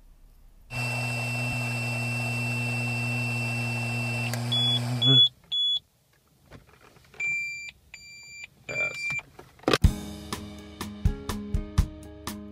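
Breath test on a Smart Start ignition interlock handset: a steady low hum with a high tone for about three and a half seconds while the sample is blown, then the device beeps three times quickly, pauses, and gives three longer, lower beeps. Acoustic guitar music starts near the end.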